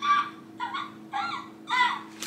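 A woman giggling: four short, high-pitched bursts of laughter about half a second apart, each falling in pitch.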